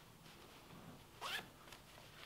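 A pocket zipper on a Sitka Fanatic hunting bib is pulled once: one short, rising zip about a second and a quarter in.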